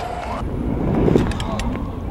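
A low rolling rumble on pavement that swells and fades about a second in, with a few light clicks, typical of stunt scooter wheels rolling on concrete. It comes right after a vocal soundtrack cuts off near the start.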